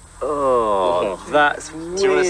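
A man's drawn-out exclamation of amazement, a long 'ooooh' that slides down in pitch, followed by a short second vocal sound.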